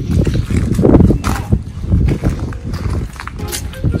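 Footsteps on wet concrete, with rustling and knocks from a handheld camera while walking.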